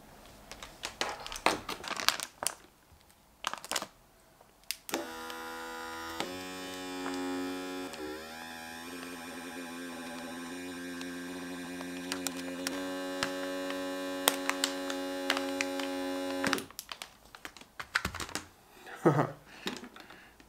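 Small USB-powered EURUS electric vacuum pump, seated on a filament storage bag's valve without an adapter, running for about twelve seconds as it sucks the air out of the bag; its hum shifts in pitch a few times, then it stops. Clicks and handling noise come before the pump starts and after it stops.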